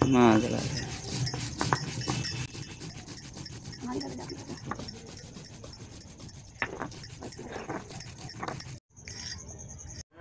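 Spices being ground on a sil-batta, a hand-held stone rubbed back and forth over a flat stone slab, scraping in repeated strokes. A short falling whine-like cry sounds at the very start, the loudest moment, with a few fainter short cries later.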